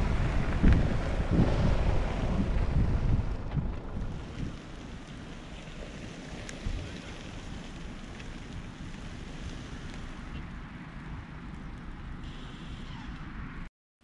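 Wind buffeting the microphone over a car slowly reversing a touring caravan, louder for the first three or four seconds and then a steadier, lower rush.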